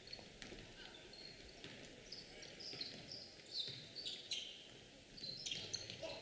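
Faint gym sound: basketball sneakers squeaking on a hardwood court, a string of short, high squeaks over a low background hum of the gym.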